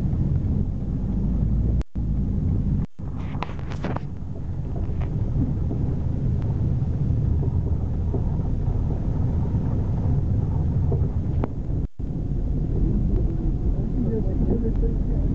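Steady low rumble of a moving car heard from inside the cabin: road and engine noise, with wind on the microphone. The sound drops out for an instant three times.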